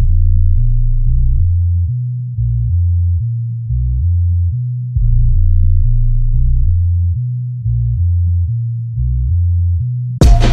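Deep, pure-toned synth bass line playing on its own in a hip-hop instrumental, with no drums: a run of low notes stepping up and down, each starting strong and fading slightly.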